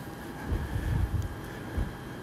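Low background rumble with a few soft, dull thumps, about half a second in, around a second in and near the end.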